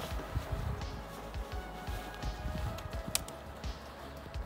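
Background music with steady held notes, over small handling ticks and one sharp click about three seconds in.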